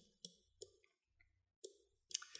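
A handful of faint, separate clicks from a computer keyboard and mouse, with near silence between them.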